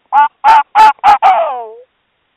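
South American gray fox calling, taken by the uploader for a female: four short barks about three a second, then a longer call that falls in pitch.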